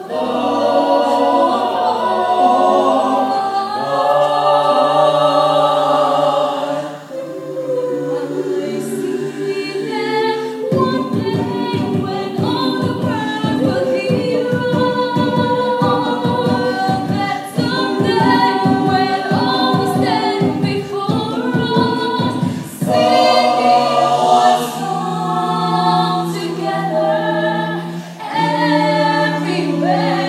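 A mixed-voice a cappella group singing in close harmony through microphones, holding sustained chords. From about 11 to 23 seconds a steady percussive beat and a moving bass line join in, then held chords return.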